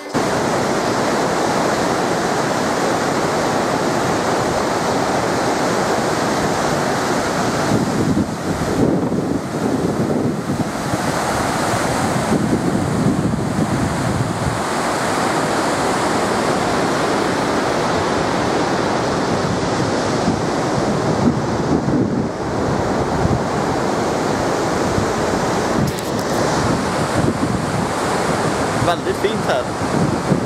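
Whitewater rapids of a fast mountain river rushing over rock: a loud, steady rush of water, with some wind buffeting the microphone.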